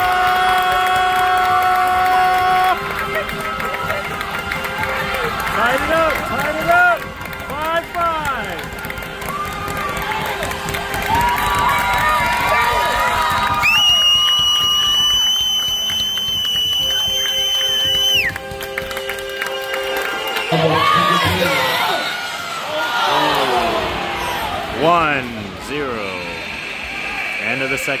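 An ice rink's horn sounds steadily for about three seconds at the start, marking the end of a period of play. Music then plays over the arena's speakers with crowd cheering and chatter, and a high steady tone holds for about four seconds midway.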